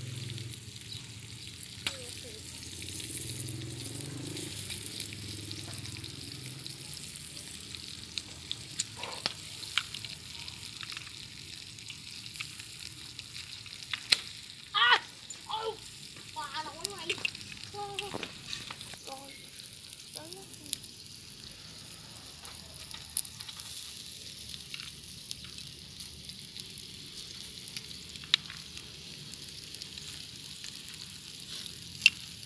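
Blood cockles in their half shells, topped with scallion oil, sizzling steadily on a wire grill over a charcoal fire, with scattered sharp pops and crackles.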